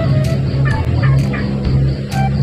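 A chicken clucking, a few short calls about half a second to a second and a half in, over background music with a steady low bass line.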